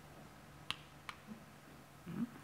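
Two faint, sharp clicks about half a second apart, from the buttons of a handheld presentation remote being pressed to advance the slides, over quiet room tone.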